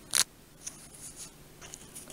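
Fingers pressing and smoothing duct tape down over sandpaper on a plastic knife sheath: one short, sharp rustle about a fifth of a second in, then faint light handling ticks.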